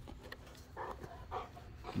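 A dog close by making a few faint, short sounds, about half a second apart.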